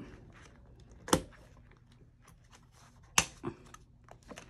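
Two sharp snaps of a budget binder's metal ring mechanism, about two seconds apart, with faint handling of plastic envelopes and cash between.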